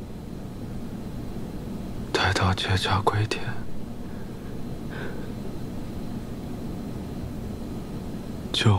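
A man's voice speaks one short, weak, breathy line about two seconds in. Otherwise there is only a low steady background hum.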